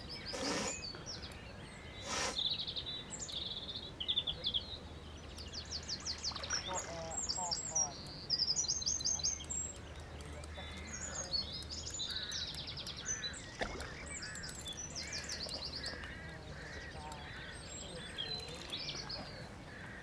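Several songbirds singing and calling at once, quick chirps and trills, busiest in the first half and thinner later on.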